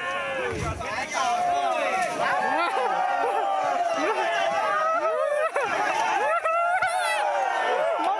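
Crowd of spectators at a water buffalo fight, shouting and calling out, many voices overlapping at once.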